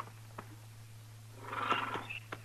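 Radio-drama sound effects of a horse: a couple of light hoof clicks, then about a second and a half in a short horse snort lasting half a second. A low, steady hum from the old recording runs underneath.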